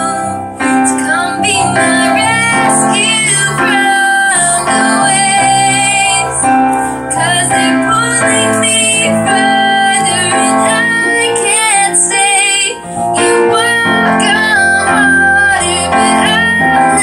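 A woman singing a song while accompanying herself on an upright piano, a live solo performance. Her phrases glide and waver in pitch over held piano chords, with brief gaps for breath between lines.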